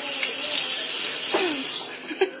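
Water running from a kitchen faucet into a stainless steel sink, shutting off near the end.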